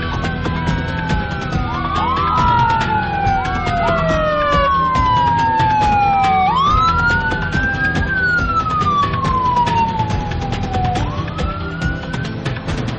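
Emergency vehicle sirens wailing, at least two at once, overlapping. Each tone rises quickly and then falls slowly over several seconds.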